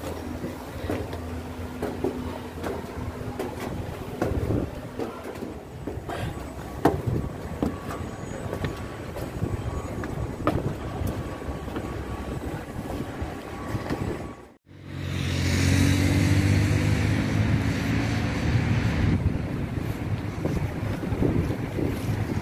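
Outdoor construction-site background noise with scattered knocks and clicks. About fifteen seconds in it breaks off suddenly, and a louder, steady low rumble of outdoor noise follows.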